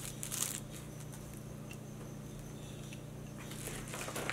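A brief soft crinkle of plastic wrapping being pulled off a pair of glasses in the first half-second, then quiet room tone with a steady low hum.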